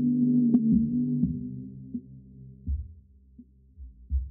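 Sampled hip hop beat played on a Roland SP-404 sampler: a held low chord fades out over the first two seconds into a near-empty break. Only a couple of short low thumps sound in the gap.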